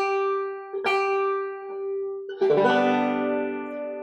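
The high G (fifth) string of a 5-string banjo plucked twice and left to ring as it is brought up a hair from slightly flat to pitch. About two and a half seconds in, all the open strings sound together in open G tuning, a louder chord that rings on.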